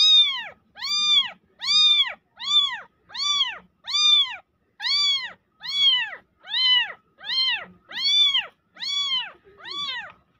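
Very young kitten meowing over and over, about fifteen cries in a steady run, roughly three every two seconds. Each cry rises and then falls in pitch.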